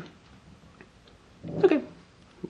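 Quiet room tone, then near the end a man says "okay" once.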